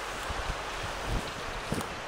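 Wind on the microphone: an even rushing hiss with irregular low rumbling gusts.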